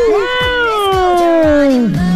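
Domestic cat giving one long meow that slides slowly down in pitch and lasts nearly two seconds.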